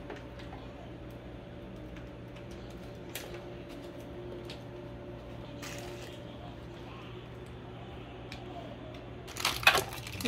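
Faint clicks, scrapes and wet squishes of a metal ladle scooping basil pesto from a plastic tub and filling a plastic bag, over a steady low hum. A brief louder clatter near the end.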